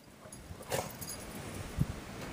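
A dog makes one short, faint sound about a second in, over a low background rumble, with a soft thump near the end.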